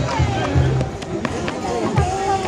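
Several people's raised voices calling out, over music with a steady low bass.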